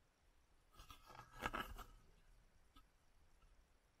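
Brief handling noise: a short rustling scrape about a second in, lasting under a second, with near silence around it.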